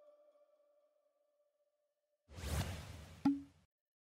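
The last held note of the background music fades away, then about two seconds in a short whoosh sound effect swells and ends in a sharp click with a brief low ping: an animated logo sting.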